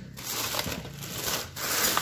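Plastic packaging rustling and crinkling as plastic-wrapped keychains and toys are handled in a plastic storage tote, irregular, with a few light knocks.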